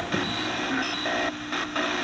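Closing bars of the cabaret song's music, held sustained notes over a steady hiss.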